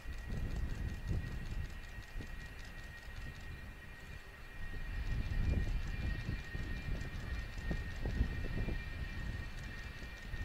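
The F-4EJ Kai Phantom II's twin J79 turbojets run at low power with a steady high whine as the jet rolls out after landing, drag chute deployed. Strong wind rumbles and buffets on the microphone in gusts, getting louder about halfway through.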